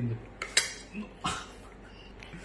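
A metal spoon clinking against a metal bowl of rice twice, about half a second in and again just past a second.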